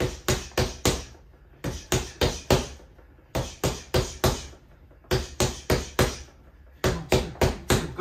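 Punches landing on a Quiet Punch doorway-mounted punching pad, thrown as continuous jab–cross–lead hook–cross combinations: five quick runs of four sharp impacts, each run about a second and a half after the last.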